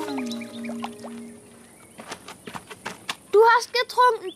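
Cartoon soundtrack: a falling musical tone settles on a held low note for about a second, then a few light drip-like ticks as water drips off a soaked teddy, and a high cartoon voice cries out near the end.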